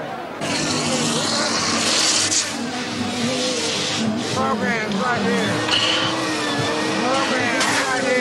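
Gas hissing from a balloon inflator nozzle as balloons are filled, in longer and shorter bursts, with wavering squeaks of rubber balloons being handled, over crowd chatter.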